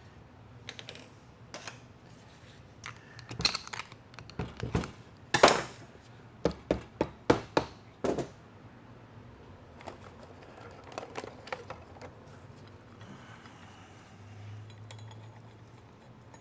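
Metal clinks and knocks from hand work on a TH400 transmission case on a steel bench, with a loud knock about five and a half seconds in. This is followed by a run of about six sharp strikes from a plastic-faced mallet, roughly three a second, ending near the middle. Lighter ticks and a brief low hum come later.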